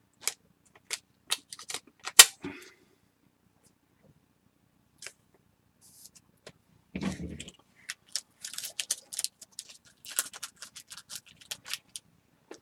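Trading cards handled by hand, with sharp clicks and snaps of card edges and stock against one another for the first two seconds or so. After a lull there is a dull thump about seven seconds in, then a quicker run of clicks as the cards are flicked through.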